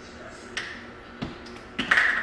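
Plastic spice shakers and caps handled on a kitchen counter: three light clicks and taps, the last one doubled near the end.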